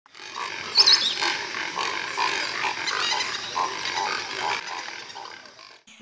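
A chorus of wild animal calls over a dense high-pitched background hum of calls, with repeated short calls and a high chirp about a second in, fading out near the end.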